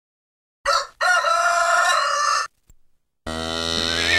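A rooster crows once, a short first note and then a long held one. About three seconds in, a horse starts a long whinny.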